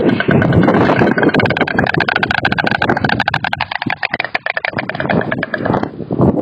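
White stork clattering its bill: a fast, even rattle of clicks that settles into a steady rhythm about a second in and stops just before the end.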